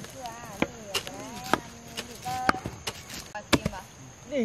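A steel hoe chopping into burnt hillside soil, about six sharp strikes at uneven intervals.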